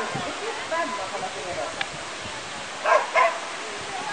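A dog running an agility course barks twice in quick succession about three seconds in, over a steady rushing background noise.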